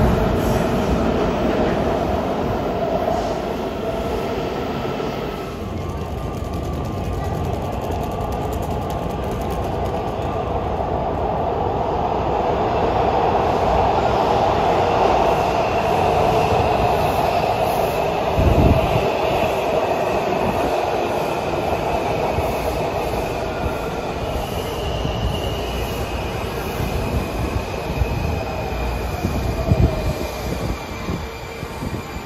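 Washington Metro subway trains moving through underground stations: a steady rumble with faint whining tones from the cars and wheels. There is a short thump about halfway through.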